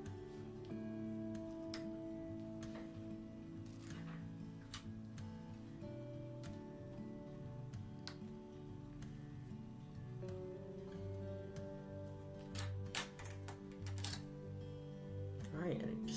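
Background music with guitar and held notes. A little before the end, a quick cluster of sharp clicks and knocks comes from a flexible steel print sheet being bent and handled as a print is popped off it.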